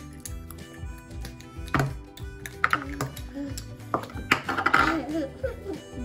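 Background music with held tones, broken by a few sharp knocks and clicks, and a child's voice about four seconds in.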